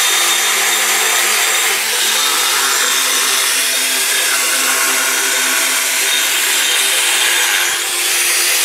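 Corded electric angle grinder cutting into a block of white stone: loud, steady grinding that holds throughout, with a short dip near the end.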